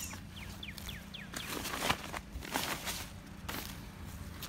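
A bird calls a quick run of short falling chirps in the first second. It is followed by a couple of seconds of rustling and scuffing as shoes in a cardboard box are handled and feet move on dry grass.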